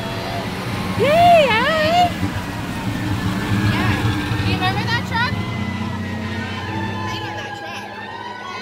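Vintage fire engine driving slowly past, its engine a low steady hum that swells as it passes and fades after about six seconds.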